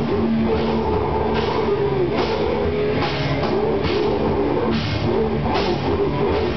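A grindcore band playing live in a small room: distorted electric guitar, bass guitar and a drum kit, steady and loud, with cymbal hits about once a second.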